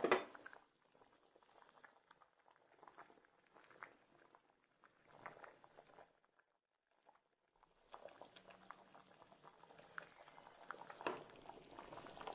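Faint, scattered bubbling pops of a thick fish curry simmering in a clay pot. There is a brief quieter spell around the middle.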